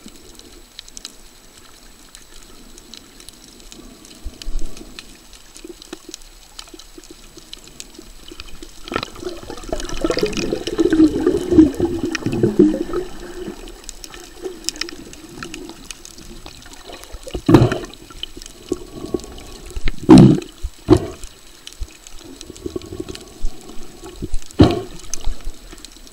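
Muffled water sloshing and churning heard underwater, quiet at first, then louder for a few seconds around the middle, with a few sharp knocks or splashes near the end.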